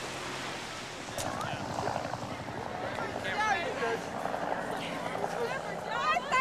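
Motorboat engine running steadily under wind noise on the microphone, with faint voices in the background.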